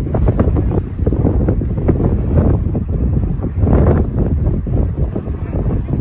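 Wind buffeting the microphone: a loud, irregular low rumble, swelling in a stronger gust about four seconds in.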